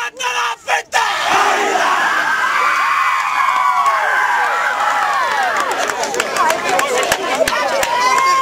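A football team performing a haka: two short shouted calls, then many voices shouting together without a break, with many sharp smacks in the second half, typical of hands slapping chests and thighs.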